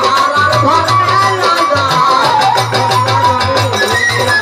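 Live Bengali pala gan folk ensemble playing: a wavering lead melody over a steady, repeating low beat.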